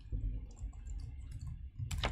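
Typing on a computer keyboard: scattered keystroke clicks, with a louder click near the end.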